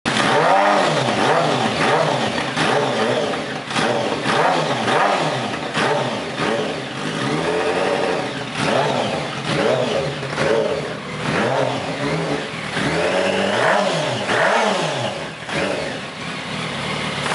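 Yamaha R1 motorcycle inline-four engine swapped into a Fiat 500, running on its first start and being revved in repeated short blips about once a second, the pitch rising and falling with each.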